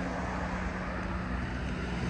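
Steady outdoor background noise: an even hiss with a low rumble and a steady low hum underneath.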